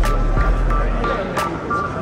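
Background music playing over the chatter of a crowded room and a steady low hum, with a few sharp clicks.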